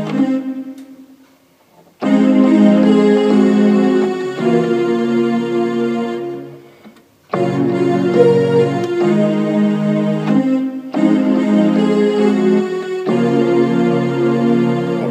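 Portable electronic keyboard playing slow, held chords on a synthesizer voice, the chord changing every two seconds or so. The sound dies away twice, shortly after the start and about six seconds in, before the next chord comes in.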